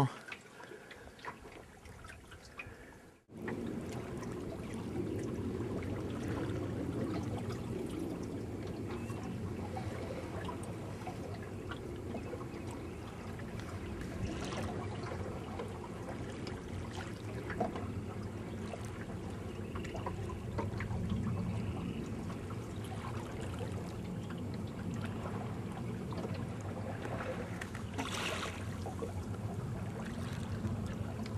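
Water trickling and lapping along the hull of a wooden Welsford Pathfinder sailboat moving slowly through the water in a light breeze, at about 2 knots. It is faint for the first three seconds, then a steady low wash with small splashes.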